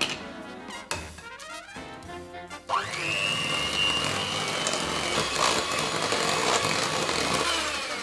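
Electric hand mixer switching on about a third of the way in, its motor whine rising quickly to a steady pitch as the beaters work a butter, sugar and egg mixture, then winding down just before the end.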